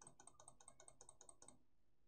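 Faint, rapid clicking at a computer, about ten clicks a second, stopping about a second and a half in.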